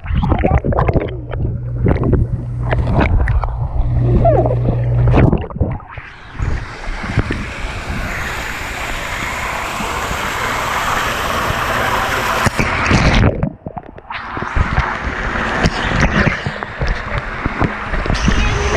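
Pool water splashing and sloshing close to the camera, then a steady rush of running water, broken by a short quieter gap about two-thirds of the way through.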